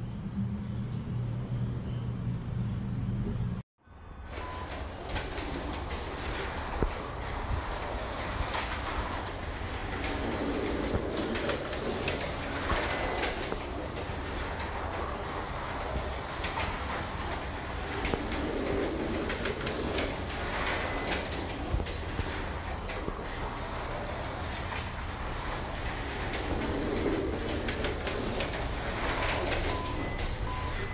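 SRC Yardley McLaren M23 slot car lapping a Carrera plastic track: the electric motor's whine and the rattle of the car in the slot, swelling each time it passes nearest, about every eight seconds. A low hum for the first few seconds, then a brief silence before the laps begin.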